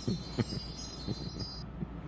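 Faint chime-like tinkling, a few short soft notes, over a low steady hum.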